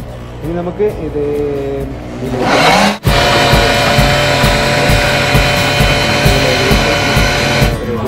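Countertop blender motor spinning up about two and a half seconds in and then running loud and steady at high speed, blending avocado and milk into a shake, before stopping just before the end.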